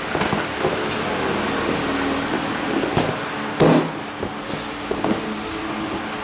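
Motorcycle seat being lowered and pressed shut over the under-seat compartment. A few knocks and clicks are heard, the loudest about three and a half seconds in, over a steady background hum.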